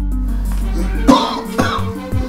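A man coughing twice, about a second in and again half a second later, over background music.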